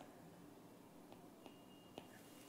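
Near silence: faint room tone with a few soft, short ticks, a stylus tapping as it writes on a pen tablet.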